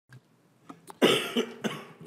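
A man coughing into his fist close to a desk microphone: one loud cough about a second in, then two smaller ones.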